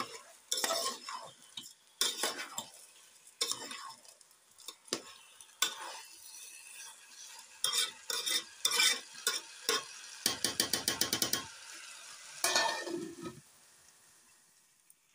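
Steel spoon stirring rice and chopped vegetables in a steel pot, with repeated scraping and clinking strokes against the pot. About ten seconds in comes a fast, even run of clicks lasting about a second. Near the end a steel plate is set over the pot as a lid.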